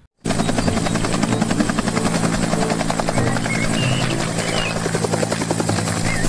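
Bell UH-1 'Huey' type two-bladed military helicopter hovering close to the ground and lifting off: a rapid, even chop of the main rotor blades over a steady engine hum. It starts suddenly just after the opening.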